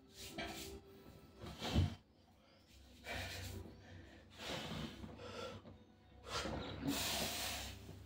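A lifter's forceful breaths, about five short bursts with hand rubbing between them, the last and longest near the end as he grips and lifts a 32.5 kg block-handle grip implement.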